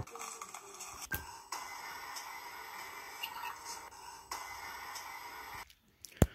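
Faint music-like transition sound effect: steady held tones that change twice, about a second and a half in and again past four seconds, with a click about a second in.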